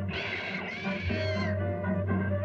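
A cartoon monkey's high-pitched squealing call, about a second and a half long with a wavering pitch, over orchestral background music.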